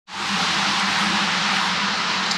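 Steady hiss of rain falling on a shop roof, with a low steady hum underneath, fading in at the very start.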